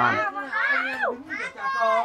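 Several people talking, among them high-pitched children's voices.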